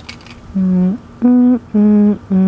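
A person humming a slow tune with the mouth closed: three held notes, each about half a second long, beginning about half a second in.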